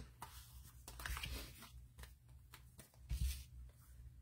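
Cardstock being handled on a tabletop: faint paper rustles and light taps, with a soft thump about three seconds in.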